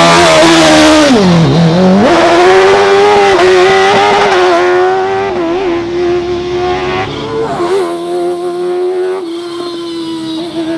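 Fuga 1000 racing prototype's engine launching from the start. The revs sag sharply about a second in, then climb back, and the engine pulls at high revs with a couple of brief dips, growing fainter as the car draws away.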